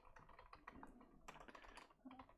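Faint computer keyboard typing: an irregular run of quick key clicks.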